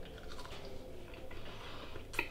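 A person chewing a soft smoked garlic clove, faint.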